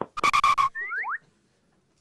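Cartoon sound effects: a short, loud pitched blast with a fluttering pulse, then three quick rising whistle slides.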